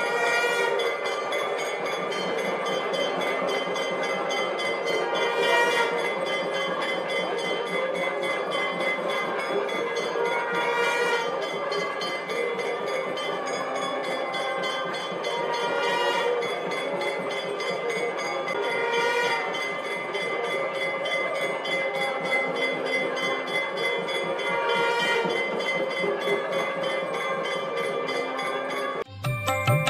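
Live temple ritual music: sustained reedy wind-instrument tones held over a steady drone. The music swells brighter briefly every few seconds.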